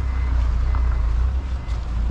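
Low, steady rumble of an idling vehicle engine.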